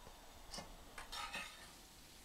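Faint clicks and light clatter of kitchen handling: a few short knocks, about half a second in and again around a second in.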